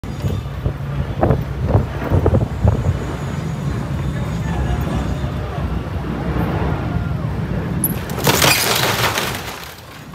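Deep, steady low rumble from a large motor yacht's engines and thrusters as it manoeuvres close against a dock. About eight seconds in, a loud noisy burst lasting a second or so as the bow pushes into the floating dock and churns the water.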